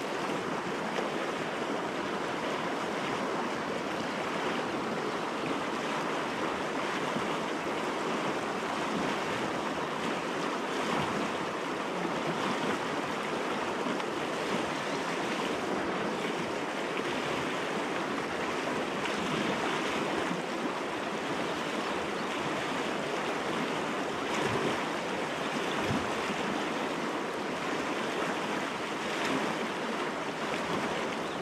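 Steady rushing of a fast mountain river running high with runoff, water churning over rocks in riffles.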